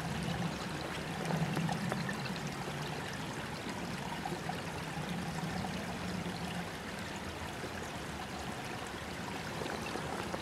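Shallow creek water running and trickling steadily.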